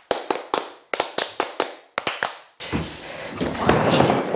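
A quick run of sharp taps, about four a second, then, about two and a half seconds in, the continuous rumble of skateboard wheels rolling down a wooden mini ramp as the skater drops in.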